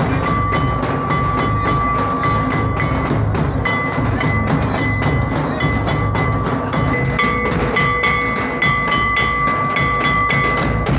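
Traditional Santal dance drumming: a large kettle drum, a bass drum and a hand drum beating a fast, dense rhythm, with a high ringing tone held over it.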